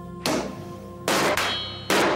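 Broadsword blows cutting into a meat test target: a short thud about a quarter-second in, then a heavier strike about a second in with a brief metallic ring. Background music with held notes plays underneath.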